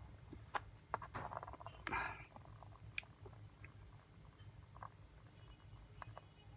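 Faint handling noises of a rock and a small magnet being moved by hand: scattered light clicks and a brief scrape about two seconds in, with one sharp click about three seconds in.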